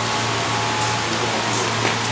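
A steady rushing noise with a low hum underneath, unchanging throughout, with no distinct events.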